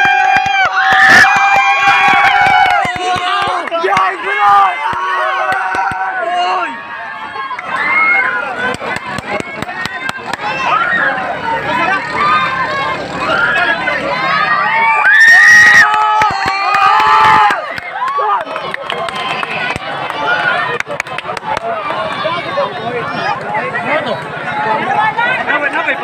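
A crowd shouting and cheering, many voices overlapping, with loud bursts of yelling about a second in and again around the middle.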